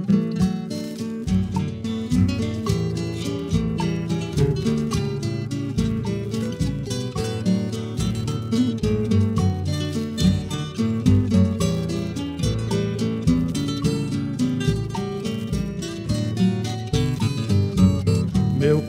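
Viola caipira, the Brazilian ten-string folk guitar, playing the instrumental introduction to a recorded song: quick runs of plucked notes over low bass notes.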